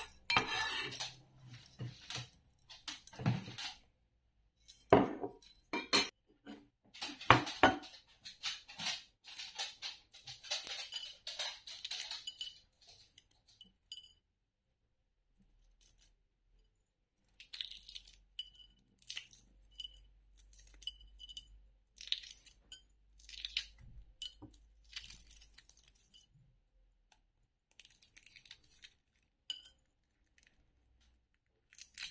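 A knife scraping and tapping on a wooden cutting board and clinking against a glass bowl, with several sharp knocks, over the first half. After a short pause, the shell of a hard-boiled egg is cracked and peeled over a ceramic plate in sparse small crackles and clicks.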